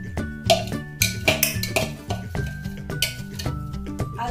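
Background music, with a metal spoon clinking and scraping against bowls several times as paste is scraped out of a small bowl into a mixing bowl.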